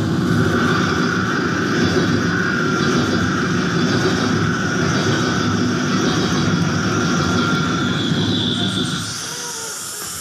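Mouth-made impression of an elevated subway train going by, voiced into a handheld microphone with cupped hands: a steady rumble with a thin high squeal over it, dropping off near the end.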